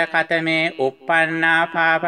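A male voice chanting Pali Buddhist scripture from the Tipitaka in a steady recitation tone, each syllable held on a near-level pitch with short breaks between.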